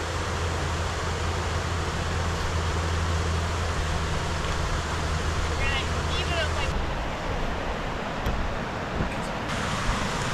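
Steady rushing of a white-water creek, an even wash of noise, with a low steady hum under it for the first seven seconds and a short run of high chirps about six seconds in.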